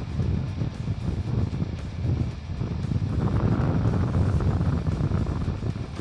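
Wind buffeting the microphone as a steady, rough low rumble, a little louder in the second half, with background music underneath.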